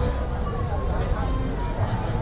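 Busy street ambience: indistinct chatter of people talking around the microphone over a steady low rumble of road traffic.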